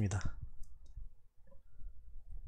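A man's word trails off, then a few faint, sharp computer mouse clicks.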